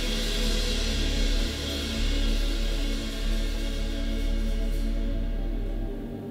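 Live worship band playing an instrumental passage, with acoustic guitar, drums and sustained chords. The bright top of the sound drops away about five seconds in, leaving a softer, ambient pad.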